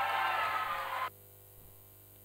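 The last word of the ring announcer's PA call dies away as a reverberant ring in the hall, then cuts off abruptly about a second in. After the cut there is near silence with a faint mains hum.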